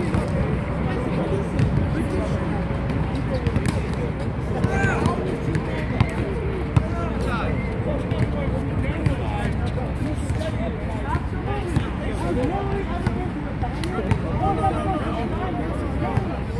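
Basketball bouncing on an outdoor asphalt court, a scattering of sharp thuds, under indistinct players' voices and steady low background noise.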